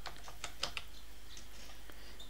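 Computer keyboard typing: a few irregular, fairly faint key clicks.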